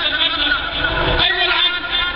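A man speaking forcefully in Arabic into a microphone, with a low rumble under his voice, strongest about a second in.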